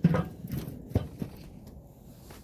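Enamelled steel lid of a charcoal kettle grill set down onto the bowl: a clunk at the start, then a smaller knock about a second in as it settles.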